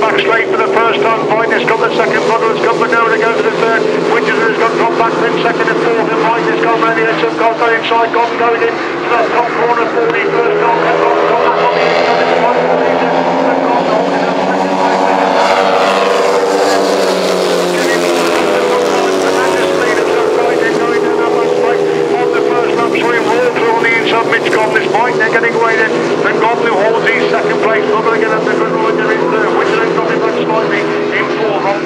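Several solo racing motorcycles running flat out on a sand beach track, engines revving hard through the turns. About halfway through, one passes close and its pitch rises, then drops away.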